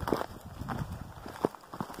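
Footsteps crunching over dry, rocky ground through sagebrush, with brush scraping past, in an irregular rhythm. One sharp click about a second and a half in.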